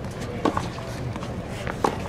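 Two sharp tennis ball pops about a second and a half apart, the second a one-handed backhand slice struck off the strings of a Wilson racket, over a steady murmur of spectators.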